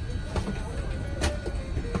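Steady low rumble of an airliner cabin's ventilation with the aircraft parked at the gate, with faint background music and voices. A few sharp clicks stand out, the loudest about a second in.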